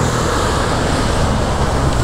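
Steady rushing noise of road traffic, even and unbroken, with a deep low rumble under a fainter hiss.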